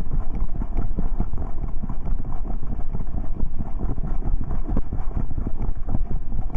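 Camera mount on a trotting dog: a fast, uneven run of bumps and rustles from the dog's gait jolting the camera, with wind on the microphone.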